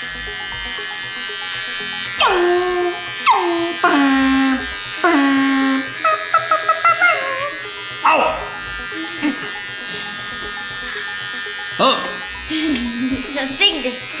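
Handheld electric shaver buzzing steadily as it runs over a man's beard. A singing voice with falling, sliding notes rises over the buzz a couple of seconds in and again near the end.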